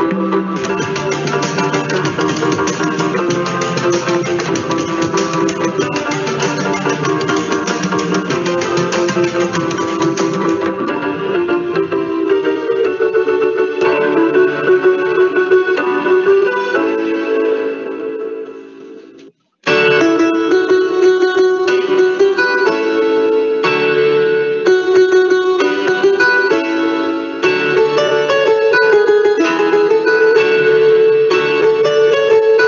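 Instrumental music from a small band of keyboard, acoustic and electric guitar, and tabla. A little past halfway the music fades out and stops for a moment, then starts again suddenly.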